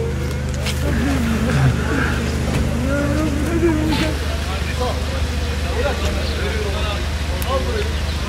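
A man's wavering, weeping voice in the first half, with scattered crowd voices, over a steady low engine hum.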